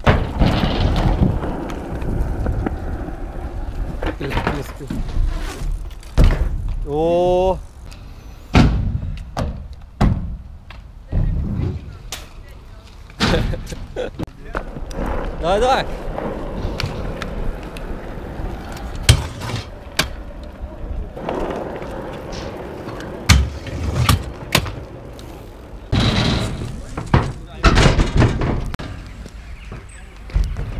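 Skatepark riding: wheels rolling with a rumble over rough asphalt, broken by many sharp knocks and clacks of boards and bikes landing and hitting the ground. A couple of short rising vocal calls come about seven seconds in and again around fifteen seconds.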